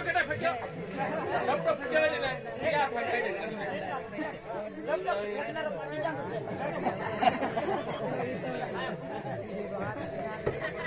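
Several people talking over one another, with a faint steady hum underneath.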